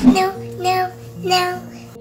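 Three short sung notes in a child-like voice, about two-thirds of a second apart, over a steady low musical drone.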